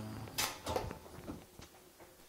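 Two sharp knocks about half a second in, then a few softer clicks and shuffling as a person gets up from a chair at a table and moves away.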